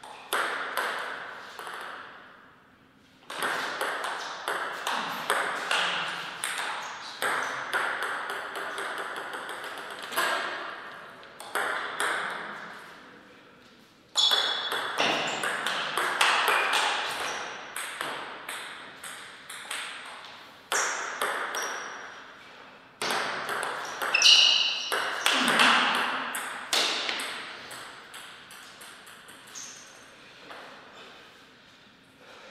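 Table tennis rallies: the ball clicking off rackets and bouncing on the table in quick, irregular strings of hits that echo in the hall, with short pauses between points, about three seconds and fourteen seconds in.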